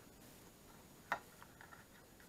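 Fingers burnishing the creased fold edges of a folded cardstock card, mostly faint, with one sharp click about a second in and a few faint ticks after it.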